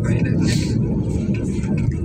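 Steady low rumble of a moving vehicle heard from inside, with a short hiss about half a second in.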